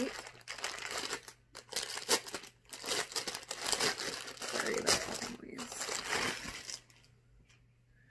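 Clear plastic packaging bag around a sweater crinkling and rustling as it is handled and opened, in a run of bursts that stops about seven seconds in.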